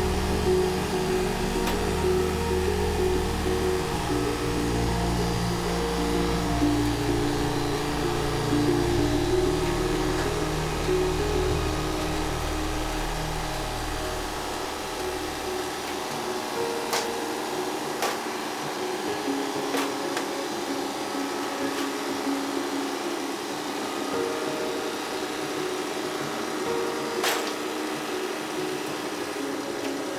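Hydraulic press pump running steadily as the press loads a steel piston into a pressure vessel, under background music. A few sharp clicks come in the second half.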